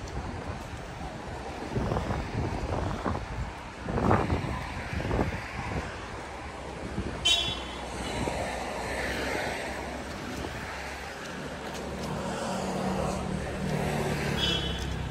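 Street traffic noise: car engines running on the road beside a sidewalk, with a few knocks and bumps in the first half, a brief sharp sound about seven seconds in, and a steady low engine hum in the last few seconds.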